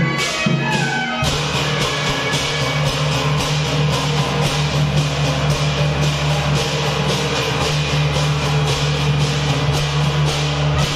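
Temple-procession percussion music: an even beat of loud, bright strikes, about three a second, over a sustained low hum, settling into its steady rhythm about a second in.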